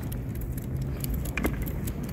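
Faint ticks and light jingling from people and a small leashed dog walking across a wooden footbridge deck, over a low steady rumble.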